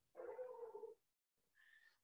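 Near silence, with one faint pitched sound of under a second near the start.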